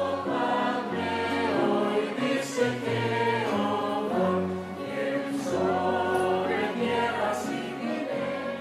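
Soundtrack music with a choir singing slow, held notes.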